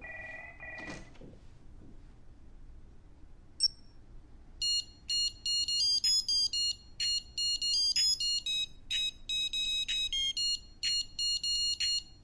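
A digital wristwatch gives one short beep, then about a second later plays a fast, rhythmic, high-pitched electronic beep tune, like a ringtone melody.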